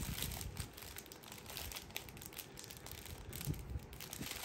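Faint crinkling of small plastic bags of diamond-painting drills being handled, with scattered soft clicks.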